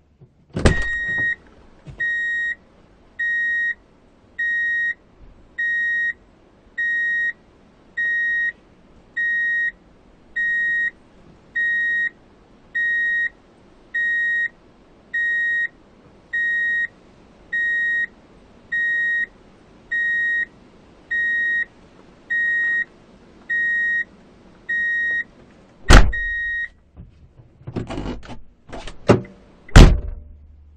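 A vehicle's reverse-gear warning beeper sounds one steady high beep about every second and a half, each beep lasting under a second. A loud clunk comes just before the beeping starts and another as it stops, then a few clicks and a sharp knock near the end.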